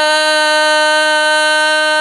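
Male solo vocalist holding one long, steady sung note of an Arabic sholawat, unaccompanied, amplified through a microphone.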